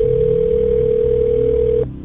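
A telephone line tone: one steady tone held for about two seconds, then cut off sharply, with the thin sound of a phone line.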